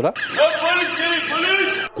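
Several people shouting at once: raised, overlapping voices, unintelligible.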